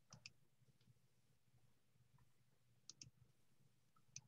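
Faint computer mouse clicks in quick pairs, one double click at the start and another about three seconds in, over near silence.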